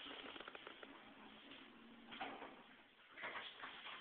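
Richmond elevator doors sliding, faint, with a few light clicks.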